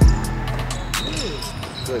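A basketball hits a gym floor once, hard, right at the start as a player dribbles into a drive to the basket. Lighter clicks and scuffs of play on the court follow.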